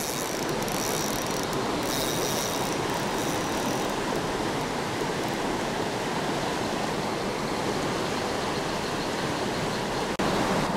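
Creek water rushing over a small rocky rapid, a steady wash.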